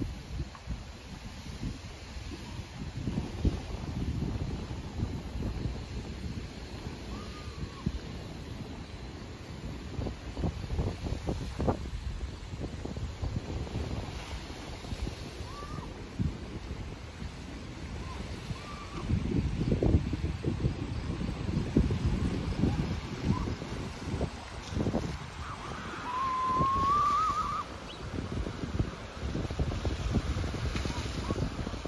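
Wind buffeting the microphone in uneven gusts, loudest a little past the middle, with a few faint short chirps and a brief wavering whistle near the end.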